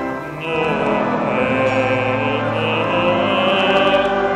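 A church congregation singing a Christmas carol together, holding long notes, with a brief pause for breath between lines just after the start.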